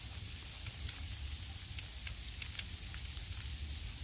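Steady hiss of light rain falling outdoors, with scattered faint ticks of drops and a low rumble underneath.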